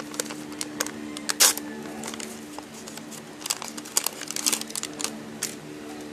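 Lined notebook paper crinkling and crackling as a folded note is unwrapped by hand, in quick irregular crackles with a loud one about a second and a half in. Steady held low notes of background music run underneath.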